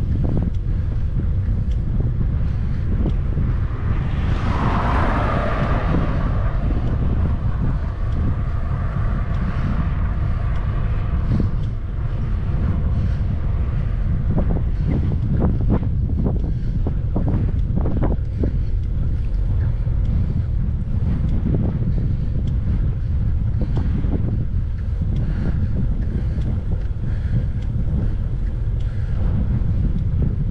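Strong wind buffeting the camera's microphone as a low, steady rumble while riding a bicycle into a headwind. A louder rushing swell comes about four seconds in and fades a couple of seconds later, and a few short clicks are heard midway.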